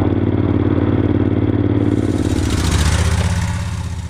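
Moto Guzzi transverse V-twin motorcycle engine running steadily while riding at town speed, heard from the rider's seat. A rush of noise swells in the second half and fades toward the end.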